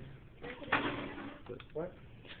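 Voices in a room, with one short noise about three-quarters of a second in and a brief spoken "what?" near the end.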